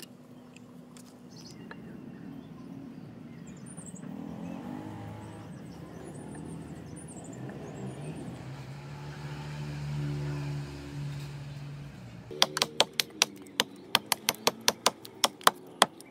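Vintage Plumb Boy Scout hatchet chopping a small block of wood on a stump: a quick run of about fifteen sharp chops, some four a second, in the last few seconds. Before that there is only a low background rumble.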